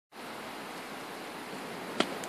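A steady, even hiss that sets in abruptly just after the start.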